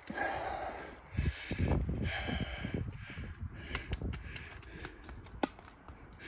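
A rock sent down a steep slope of loose quartz mine tailings, knocking and clicking against the stones as it tumbles, a string of irregular knocks lasting several seconds.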